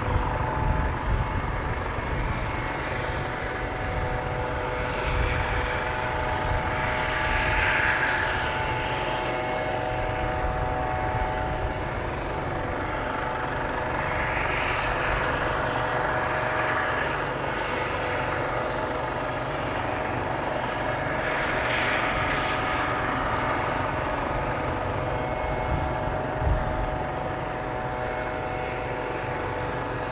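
Parked military helicopter with its turbine engines running on the ground: a steady whine under a rough low rumble, swelling and easing a few times.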